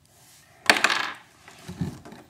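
A brief rattling clatter of small hard pieces knocked against a hard surface, about two-thirds of a second in.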